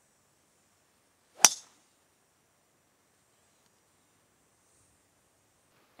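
A golf driver striking a ball off the tee, once, about a second and a half in: a single sharp crack with a brief high ring.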